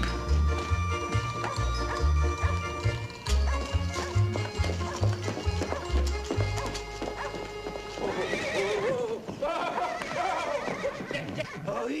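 Film score music with a bouncing bass line for the first six seconds or so. From about eight seconds in, a horse whinnies loudly several times, with hooves striking the ground.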